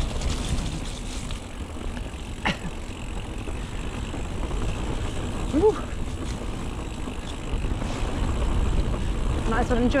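Mountain bike rolling fast down a wet dirt trail, heard from a bike-mounted action camera: a steady low rumble of tyres and suspension over the ground. A sharp click comes about two and a half seconds in, and a brief rising-and-falling squeak about five and a half seconds in.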